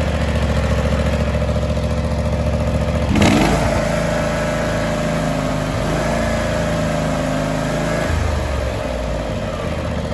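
Air-cooled Kawasaki engine of a John Deere X300 lawn tractor running with the hood off. It idles steadily as it should. About three seconds in there is a brief loud clatter, after which the engine note changes.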